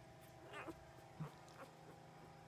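Faint, short high squeak from a newborn Labrador puppy about half a second in, followed by a couple of smaller faint sounds.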